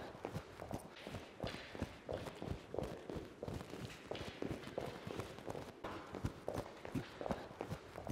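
Faint, quick footsteps of sneakers on a rubber gym mat: push-stance footwork, the feet pushing in and out of an agility ladder's squares in rapid, uneven succession.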